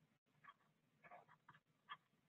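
Near silence with a few faint, short scratches of a stylus on a touchscreen as numbers are handwritten.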